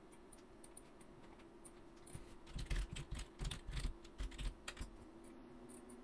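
Typing on a computer keyboard: a few scattered key clicks, then a quick run of keystrokes starting about two seconds in and lasting about three seconds.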